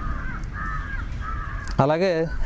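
Birds calling in the background, short faint high calls repeating, over a steady low rumble, with one louder call near the end.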